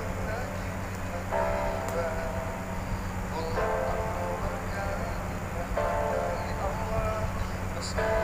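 A live pop ballad duet playing: sung phrases about two seconds long, each followed by a short gap, over band accompaniment.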